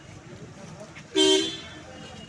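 One short vehicle horn beep about a second in, lasting about a third of a second, over a low background murmur of voices.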